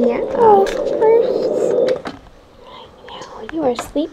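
Soft whispering and sing-song voices of a woman and a toddler, over a steady low hum that stops about halfway through.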